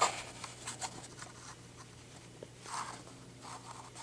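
Faint, scattered rustling and scraping of a toy car's plastic blister pack and card being handled, with one longer scrape a little before the end, over a faint steady hum.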